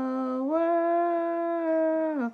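A woman singing unaccompanied, drawing out long wordless held notes: one note, a step up about half a second in that she holds, then a slide down at the end.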